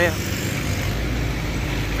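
A vehicle engine running steadily nearby: a low, even rumble of street traffic.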